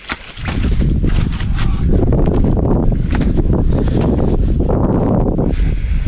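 Wind buffeting the microphone, a loud low rumble that starts suddenly just after the beginning, with rustling and a few sharp clicks in the first couple of seconds.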